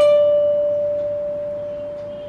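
Electric guitar: a single note picked and held, ringing on and slowly fading, the closing note of a lead phrase.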